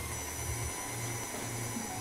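Electric stand mixer running at speed, its wire whisk beating ganache in a steel bowl: a steady low hum that pulses slightly, over a faint hiss.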